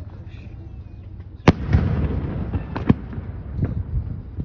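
Aerial fireworks shells bursting: one sharp, loud bang about a second and a half in, followed by a rolling rumble, then several smaller bangs near the end.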